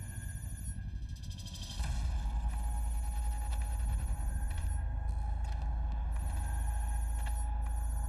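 Film-trailer soundtrack: a deep, steady low drone that swells about two seconds in, under a high, rapidly pulsing ringing tone that drops out briefly twice.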